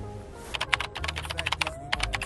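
Rapid, irregular run of small sharp clicks, starting about half a second in, over steady background music.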